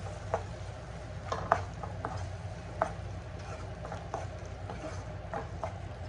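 Wooden spatula stirring chickpeas and spiced tomato-onion masala in a pan, with irregular knocks and scrapes of the spatula against the pan, the loudest about a second and a half in.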